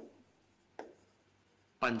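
Pen writing on a smart-board touchscreen, with short taps and strokes on the glass and one distinct tap a little under a second in.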